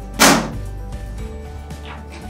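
A single sharp knock about a quarter of a second in, from a part striking the wheelchair frame as the brake levers are fitted. Steady background music plays throughout.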